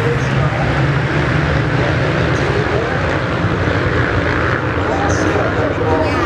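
Several motocross bikes racing around the track, their engines blending into a steady, dense drone, with people's voices mixed in.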